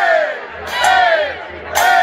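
A group of voices shouting together in rhythm, one loud unison shout about every second, over a charanga brass-and-drum street band playing.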